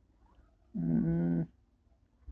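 A man's voice holding one drawn-out, level 'ehh' of hesitation for under a second, about a second in; otherwise faint room tone.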